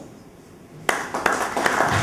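Audience applause breaking out about a second in: quick, dense hand clapping in a small room.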